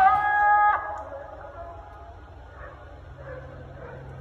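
A held musical note ends abruptly under a second in. After it, faint distant city ambience at night, with a few soft, indistinct calls.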